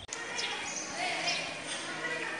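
Indistinct voices of several people talking and calling over one another, with a couple of short sharp knocks.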